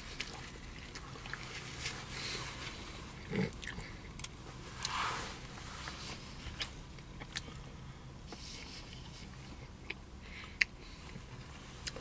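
Close-up chewing and biting of a brisket sandwich: soft, scattered mouth clicks and smacks, with a few louder ones, the loudest about three and a half seconds in.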